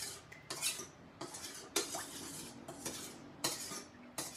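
Metal spoon stirring a liquid dressing in a stainless steel mixing bowl, scraping and clinking against the bowl in repeated strokes.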